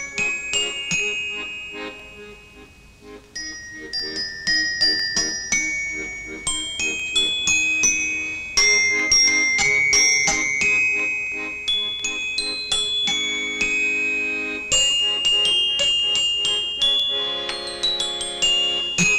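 A simple street tune played on a glockenspiel: a run of bright, ringing mallet-struck notes, over lower held chords from an accordion. The playing softens briefly about two to three seconds in, then picks up again.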